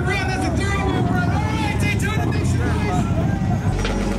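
A voice over the low, steady running of a motorcycle engine. A little before the end the low part of the sound changes to a steadier hum.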